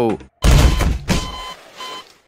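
A sudden loud, noisy burst with a deep rumble about half a second in, fading over a second, overlaid by a steady high censor-style bleep that starts about a second in and breaks off briefly near the end.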